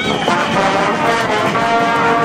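Brass band music playing, with long held notes.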